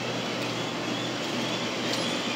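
Steady outdoor background noise with a low, even hum underneath, like distant traffic.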